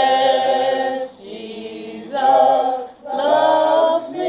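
Voices singing a slow hymn in long held notes, the phrases broken by short breaks about every second.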